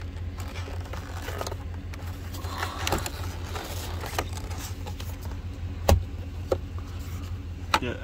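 Scattered plastic and metal clicks and knocks from a car radio unit and its wiring plug being handled and shifted in the dash opening, with one sharp knock about six seconds in as the loudest, over a steady low hum.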